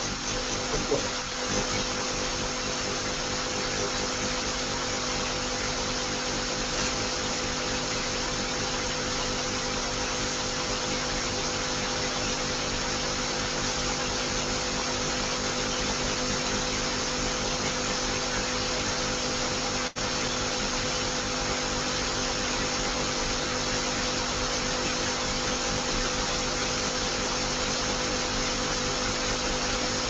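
Steady hiss with a constant hum, with a brief dropout about twenty seconds in.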